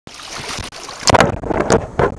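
Shallow water splashing around hands and a tautog being released into it: noise at first, with wind on the microphone, then a quick run of sharp splashes about a second in.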